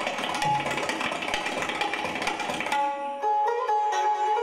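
Sitars playing a fast, dense run of rapidly repeated plucked strokes. About three seconds in, this gives way to separate, longer-held ringing notes.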